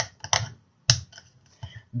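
A handful of short, sharp clicks and taps scattered over two seconds, the loudest about a second in.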